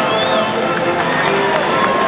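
A large crowd of voices talking and calling out at once, over band music with held notes, with scattered sharp claps.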